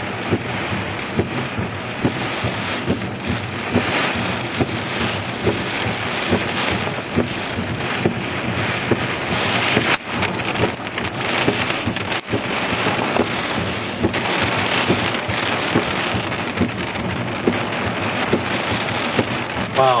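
Heavy thunderstorm downpour: a steady rush of rain with a dense patter of sharp drop hits close to the microphone.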